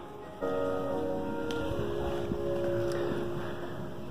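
Live music from a large ensemble on a concert stage, holding long sustained chords. It grows louder about half a second in as the auditorium door opens onto the hall.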